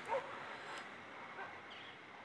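A short animal call with a bending pitch just after the start, then a couple of fainter, higher calls later, over quiet outdoor background noise.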